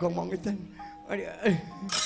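A performer's voice over the held ringing notes of a Javanese gamelan. Right at the end a sudden bright metallic clatter sets in.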